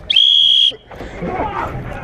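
One short, loud blast on a whistle, a steady high note lasting about half a second, signalling the start of the round. It is followed by quieter shouting and scuffling as the players set off.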